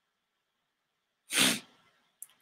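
A single short, sharp burst of breath from a man, about a second and a half in, like a stifled sneeze or a quick snort through the nose.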